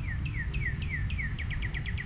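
A songbird singing a run of down-slurred notes that start spaced out and speed up into a rapid trill, over a low steady rumble.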